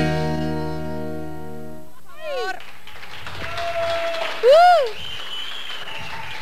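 A cumbia band's final chord held for about two seconds, then cut off. Then a few voices whoop in short cries that swing up and down in pitch, the loudest about four and a half seconds in.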